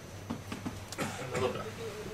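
Faint voices in a lecture room with a few light clicks, and a short wavering sound in the second half.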